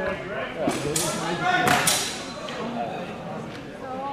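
People talking in Dutch, with two short hissing noises about one and two seconds in.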